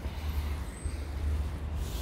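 Low, uneven rumble of wind on the microphone over the steady noise of distant road traffic.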